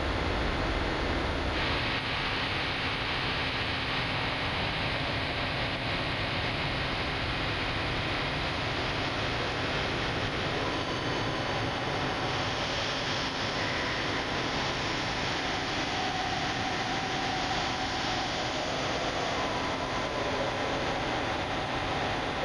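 Steady hiss-like background noise at an even level with no speech, growing slightly brighter about a second and a half in.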